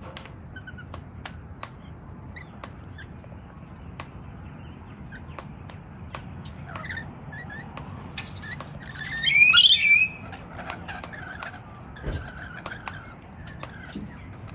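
Rainbow lorikeet giving one loud, harsh, high screech about nine seconds in, lasting about a second, with a few short chirps before it and sharp clicks scattered throughout.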